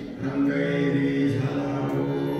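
Devotional chanting by a male voice with harmonium accompaniment, sung on long held notes. The sound dips briefly right at the start as one phrase ends, then the next held note comes in.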